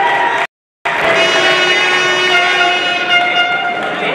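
A sustained horn-like signal of several steady tones held for about three seconds over hall noise, after a brief dropout in the audio.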